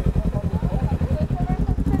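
Motorcycle engines idling at a standstill, a steady, rapid low pulsing.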